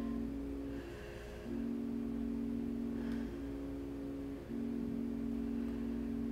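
Soft background music: held low notes and chords that change every second or two, with no beat.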